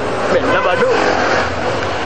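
A man's voice, with steady background noise behind it.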